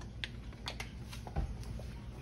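Scattered light clicks and taps, about eight in two seconds, from a silicone whisk stirring thick lemon filling in a metal saucepan while a small vanilla bottle is handled over the pan.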